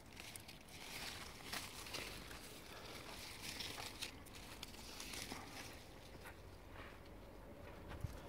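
Faint rustling of apple leaves and twigs as a hand moves through the branches and handles a fruit, with a few soft ticks.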